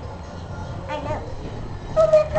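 A steady low rumble of background noise in an aquarium viewing hall, with a short snatch of a voice about a second in.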